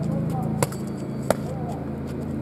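Boxing gloves striking focus mitts: two sharp smacks about 0.7 s apart. A steady low hum runs underneath.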